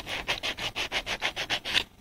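P120 sandpaper rubbed in quick back-and-forth strokes across the copper commutator segments of a starter motor armature, about six strokes a second, stopping shortly before the end. The sanding clears residue off the commutator bars to make resistance readings easier.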